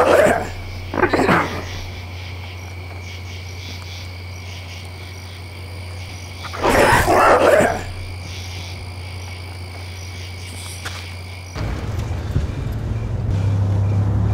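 Night-forest ambience: a steady chorus of crickets and frogs over a low hum, broken by two short rough bursts, one about a second in and one about seven seconds in. About eleven and a half seconds in, the chorus gives way to the low rumble of a car engine.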